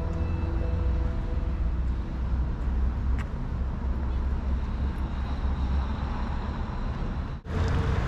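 Outdoor street ambience with road traffic and a heavy low rumble, as background music fades out in the first second or two. The sound drops out briefly near the end.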